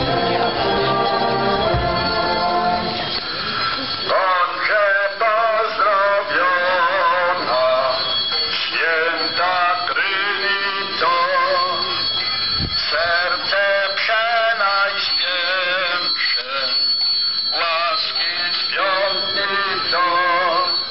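Church hymn for a procession: organ chords held for the first few seconds, then a voice singing phrase by phrase with a wide vibrato.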